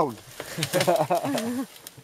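A person speaking: untranscribed talk that fades out shortly before the end.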